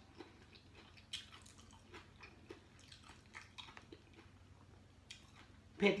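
A person chewing a mouthful of raw seafood salad up close, with faint, irregular wet mouth clicks.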